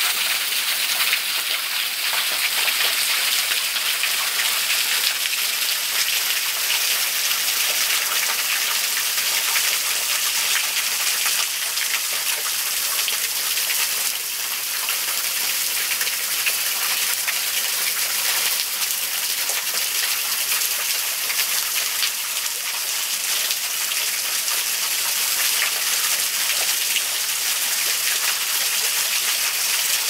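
Steady splashing hiss of falling water from a small waterfall trickling over a rock ledge onto the rocks below.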